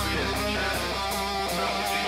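Hard rock song playing back, guitar to the fore and no vocals, in a quieter passage after the heavy low end drops away.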